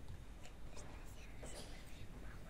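Faint whispering from people in the audience close to the microphone, in a quiet hall, with a few faint taps.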